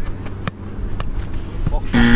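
A football being touched and caught by goalkeepers' gloved hands and feet in a keepy-up game: a few sharp thuds about half a second apart, over a low wind rumble.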